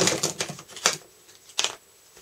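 A few sharp clicks and taps of small hard objects knocked together on a worktable as a craft knife is picked up from among craft supplies, the loudest right at the start and the others just under a second and about a second and a half later.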